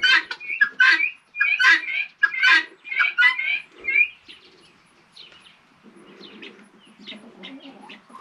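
Poultry in a pen calling: a quick run of short, high chirping calls for about four seconds, then fainter, scattered calls.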